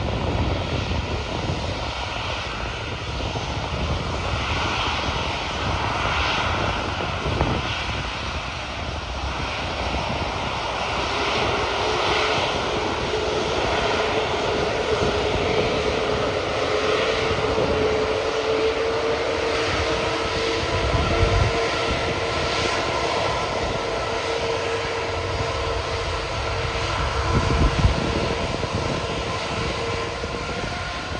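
Airbus A380's four turbofan engines running at taxi power as the jet rolls slowly past, a steady jet roar with a whine that comes in about a third of the way through and holds. Two brief low thumps come in the second half.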